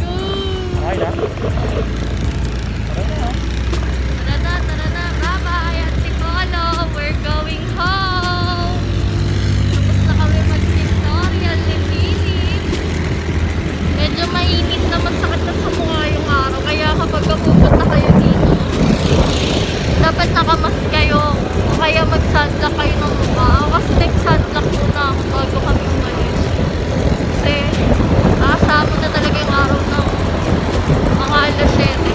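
Motorcycle riding on the road, heard from the pillion seat: a steady low rumble of wind buffeting the microphone and the engine running, with voices talking over it.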